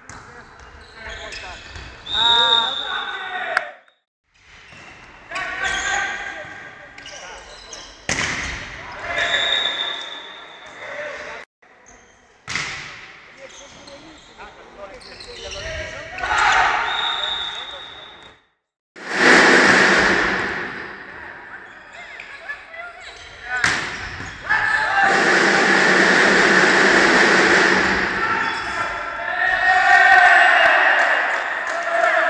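Indoor volleyball rallies in a gym hall: the ball being struck and bouncing, players calling out, and three short referee whistle blasts. Near the end comes a long stretch of loud shouting and cheering from the players.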